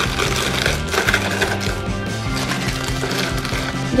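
Crinkling and crackling of plastic candy wrappers as candy packets are pushed into a clear plastic box, over steady background music.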